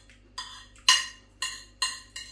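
Metal spoon knocking and scraping against a food container: four sharp clicks about half a second apart as the last of the curry and rice is scooped up.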